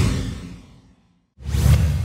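Whoosh sound effects from an animated logo sting: one fading out over the first second, then after a brief silence a second whoosh hits about a second and a half in with a deep low rumble that fades slowly.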